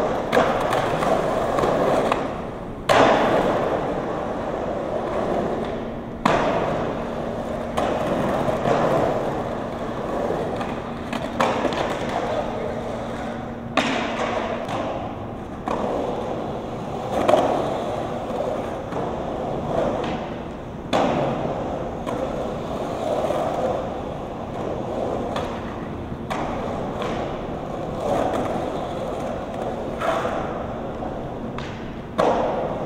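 Skateboard wheels rolling on concrete, a steady roar broken every few seconds by sharp knocks of the board.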